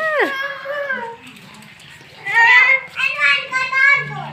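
A child's high-pitched voice calling out without clear words. It opens with a quick rising-and-falling squeal, goes quieter for about a second, then breaks into louder shouts in the last two seconds.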